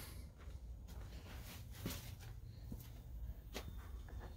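Quiet room tone with a steady low hum and a few faint clicks and light knocks, like a phone being handled or footsteps while the camera moves.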